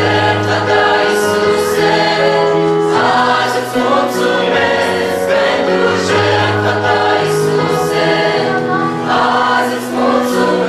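Mixed choir of young men and women singing a Romanian Pentecostal hymn together in harmony, holding long notes that change every second or so.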